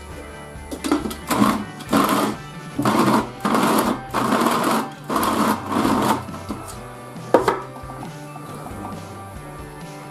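Small electric push-lid mini chopper pulsed in six or seven short whirring bursts, each about half a second long, finely chopping pork rind and bacon with garlic. A single sharp click follows near the end.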